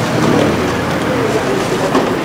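Steady street noise with faint, distant voices and a low hum.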